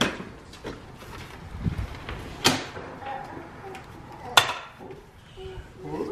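Sharp knocks and clanks from a folding wagon's metal frame and handle as it is handled and loaded, three loud ones spaced a couple of seconds apart.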